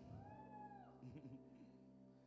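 Faint, off-microphone voice from the congregation calling out once in reply, a long high call whose pitch rises and falls, followed by a little softer murmuring, over a faint steady background tone.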